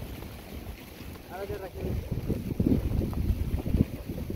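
A sheep bleats once, a short quavering call, about a second and a half in. Wind buffets the microphone throughout, growing louder in the second half.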